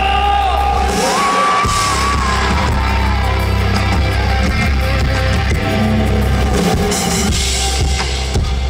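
Live rock band playing an instrumental passage between verses: electric bass, drums and guitars. A high lead line rises in pitch about a second in and slides back down.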